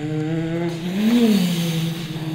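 A person humming a sustained, motor-like drone with their voice, the pitch sliding up and back down once about a second in.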